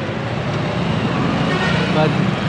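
Steady running noise of a motorcycle being ridden through city traffic: engine hum and road noise, with no sudden events.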